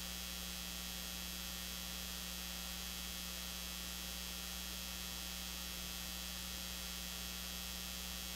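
Steady electrical mains hum with a constant hiss over it, unchanging throughout; no voices, music or other sounds come through.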